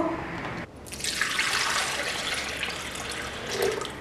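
Coconut water poured from a glass jar into an empty blender jar: a steady splashing pour that starts about a second in and tails off near the end.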